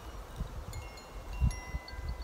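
Small hand bell tinkling, with thin, lingering high ringing tones that start a little under a second in and again about halfway through, over wind buffeting the microphone.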